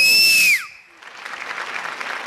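Studio audience applauding at the end of a song. It opens with a loud, short high-pitched tone that falls away about half a second in, before the clapping carries on more quietly.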